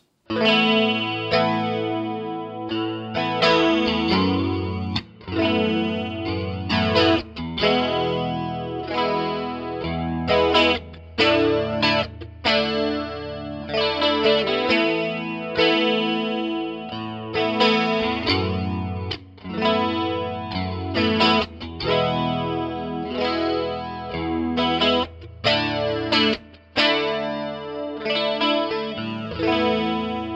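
Electric guitar played through a Roland Jazz Chorus 77 stereo combo amp with its chorus effect on, picking chords and single notes that ring and are restruck every second or so. It is heard through a pair of small-diaphragm condenser mics set up as an ORTF stereo pair in front of the amp.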